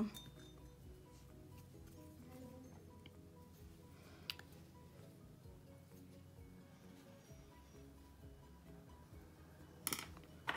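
Faint soft background music, with one sharp click about four seconds in and a couple of sharper clinks near the end: small metal craft tools such as tweezers being handled on the desk.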